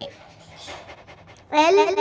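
A short gap between lines of a sung alphabet rhyme, holding only a faint breath. About one and a half seconds in, a high singing voice starts the next line, 'L for lion'.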